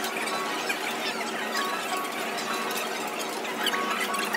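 Metal spatula scraping and spreading ice cream on a frozen steel plate, a run of short, scratchy strokes.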